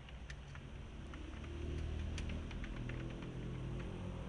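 Light, irregular clicking of a computer keyboard and mouse, several clicks a second, over a low steady hum.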